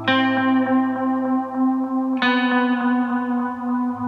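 Electric guitar chord struck twice, about two seconds apart, each left ringing and fading over a steady low sustained note, the quiet intro of a song.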